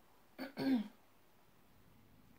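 A woman clears her throat once, briefly, about half a second in.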